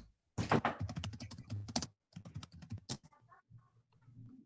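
Typing on a computer keyboard: a fast, dense run of keystrokes for about a second and a half, a brief pause, then more keystrokes that thin out near the end.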